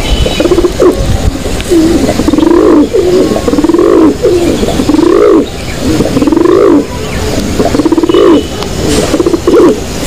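Domestic pigeons cooing: a run of low, repeated coos that rise and fall in pitch, about one a second.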